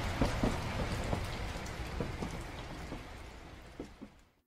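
A noisy hiss with scattered crackles over a low rumble, fading out steadily at the close of a rock album track.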